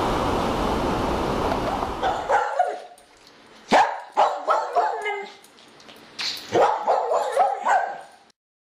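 Steady wind and surf noise on the microphone, cut off suddenly about two and a half seconds in. Then a dog barks repeatedly, about a dozen barks over the last five seconds.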